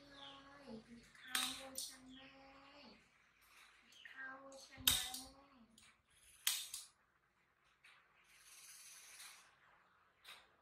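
A voice making long, steady-pitched tones in two stretches, each sliding down in pitch at its end, with three sharp clicks about one and a half, five and six and a half seconds in.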